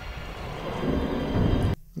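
Film sound effects of a vehicle plunging into a lake: a low rushing rumble that swells and then cuts off abruptly near the end.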